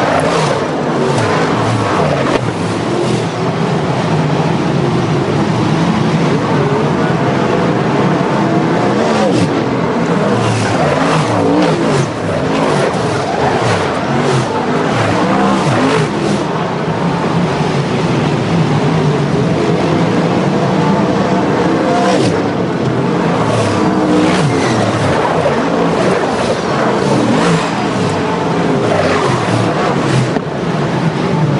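A field of sprint cars racing on a dirt oval, their V8 engines running hard without a break. Cars pass close by several times, each pass a brief loud surge over the steady noise of the pack.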